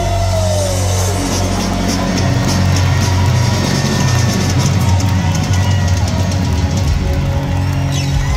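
Live rock band of electric guitars, bass and drum kit playing loudly. The bass is held under steady cymbal wash, with a note bending in pitch right at the start.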